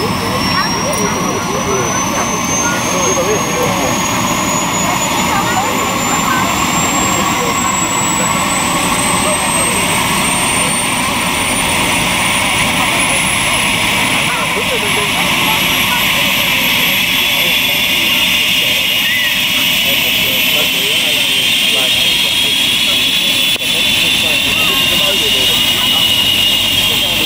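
A Bell 505 helicopter's Safran Arrius 2R turboshaft spooling up on the ground. Its high turbine whine rises steadily in pitch while the main rotor speeds up.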